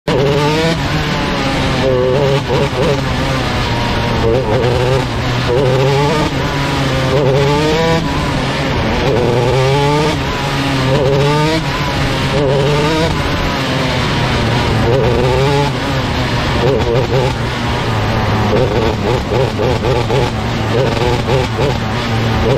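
125cc four-stroke micro sprint car engine heard close up from the onboard camera, revving up and backing off again and again every second or two as it laps the dirt track.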